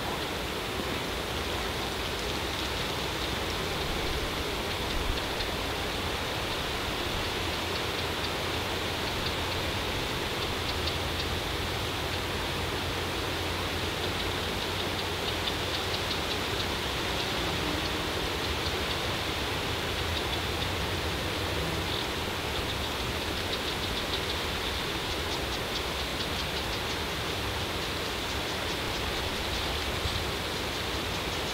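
A steady, even outdoor hiss with no distinct events and a faint high-pitched shimmer running through it; no call or movement from the moose stands out.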